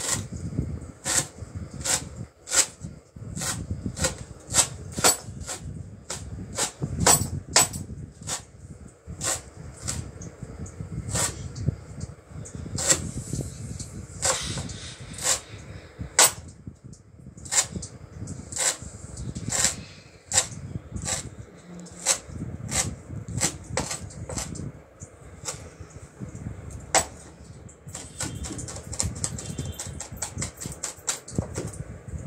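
Kitchen knife chopping leafy greens finely on a plastic cutting board: sharp knocks of the blade on the board, about two a second and uneven, quickening near the end.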